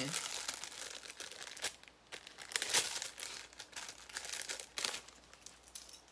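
Packaging crinkling and rustling as hands handle it, in irregular crackles with a few louder bursts around the middle.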